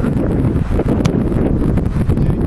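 Wind buffeting the camera microphone in a steady loud rumble, with one sharp knock about a second in: a football being kicked.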